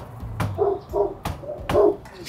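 Knocking on a front door, then a dog barking: about four short, evenly spaced barks in quick succession.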